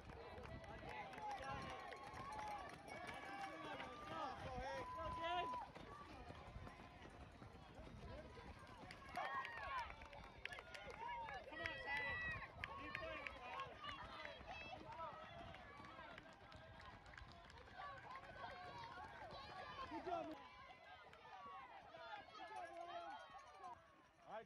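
Spectators shouting and cheering to runners, many voices overlapping, with runners' footsteps on a dirt and gravel trail as the pack passes close by.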